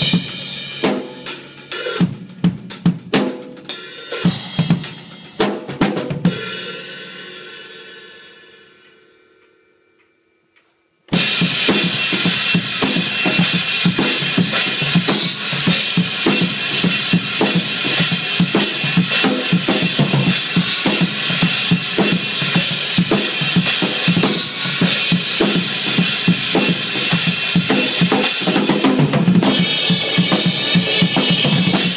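Acoustic drum kit played hard: separate drum and cymbal hits for about six seconds, then a cymbal ringing out and dying away to silence. After a short gap comes fast, dense metal drumming, with kick, snare and cymbals, that runs on without a break.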